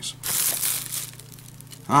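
Thin plastic shrink wrap crinkling as hands rummage through it, for about a second, then dying down.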